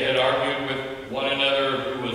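A man's voice chanting in long held notes, in two phrases with a brief dip about a second in.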